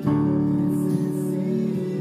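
A chord struck on a Yamaha digital piano at the start and held, ringing steadily: a D major chord.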